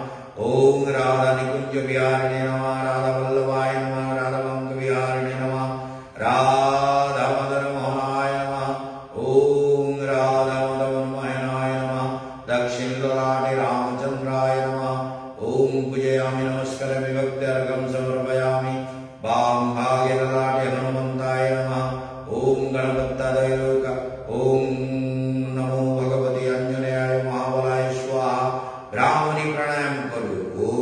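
A man chanting a mantra solo in long held notes, phrase after phrase of about three seconds each, with a short breath between phrases.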